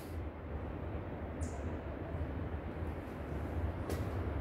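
Low, steady rumble of outdoor background noise on a handheld recording, with a brief high chirp about a second and a half in and a short click near the end.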